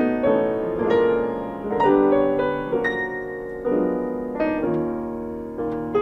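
Piano duo playing: two pianists strike chords about once a second, each left to ring and fade before the next.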